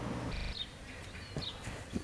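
Quiet outdoor ambience with small birds chirping, short falling chirps coming every half second or so, and a couple of soft knocks. A low steady indoor hum fills the first half second and then cuts off.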